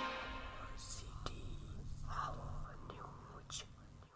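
The tail of the outro music fading away, followed by faint whisper-like voice sounds and a couple of soft clicks.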